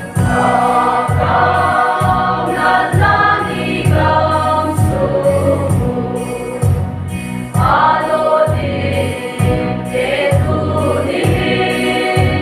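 Mixed youth choir singing a gospel hymn together, over an accompaniment with a steady low beat about twice a second.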